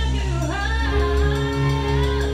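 A song with a lead vocal, with a drum kit played along live: sticks striking the cymbals and drums in time with the track.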